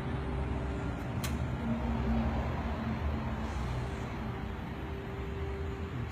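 A large vehicle's engine idling: a steady low rumble with a steady hum over it, and a single sharp click about a second in.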